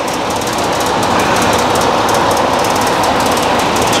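Loud, steady machine noise with a fast, dense rattle, swelling slightly about a second in.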